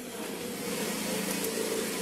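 A steady mechanical hum with a hiss, slowly growing louder; no single sharp sound stands out.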